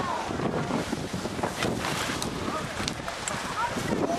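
Wind buffeting the camera microphone in a steady rush, with faint voices of people and a few light clicks.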